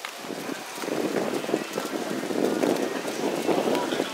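Outdoor arena ambience: wind buffeting the microphone over a low murmur of distant voices.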